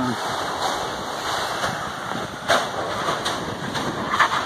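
Steam and volcanic gas venting from an eruption fissure, a steady rushing hiss, with a couple of brief sharp pops in the second half.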